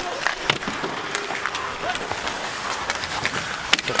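Ice hockey rink sound: skates scraping the ice and sharp clacks of sticks and puck over arena crowd murmur. The sharpest clack comes near the end.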